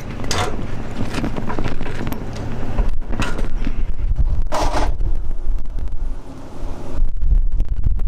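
Strong wind buffeting the microphone with a heavy rumble, over a GMC pickup truck running as it tows a 35-foot draper header on its transport cart.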